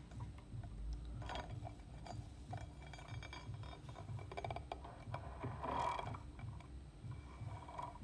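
Faint clicks and rubbing as a toothed timing belt is pressed by hand onto the teeth of a large aluminium pulley, with a short louder rustle about six seconds in.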